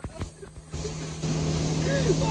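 Automatic car wash running, its water spray and machinery noise growing louder from about a second in, heard through the van's open windows, over a few knocks of the phone being handled at the start.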